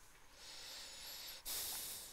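A person breathing close to the microphone: a soft breath, then a louder, sharper one about one and a half seconds in.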